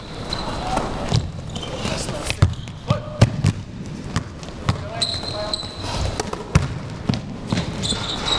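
Basketball bouncing on a hard gym floor, dribbled up the court in a series of sharp bounces at an uneven pace, with players' voices calling out in the hall.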